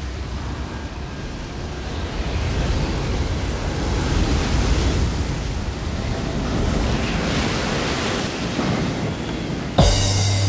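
Ocean surf washing in swells, fading in and rising in level. Just before the end a sharp hit and a steady low bass note come in as the music begins.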